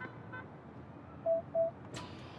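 Car lock chirping twice as a key fob unlocks it: two short, identical beeps in quick succession, about two-thirds of the way through.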